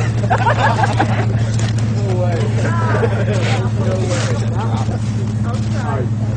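Lifted Toyota 4x4 off-road truck's engine running at a steady idle, a constant low hum throughout, with people's voices chattering over it.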